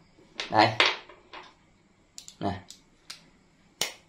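Self-adjusting locking pliers clamping onto a steel hex nut: a few light metal clicks in the second half, then one sharp click near the end as the jaws lock onto the nut.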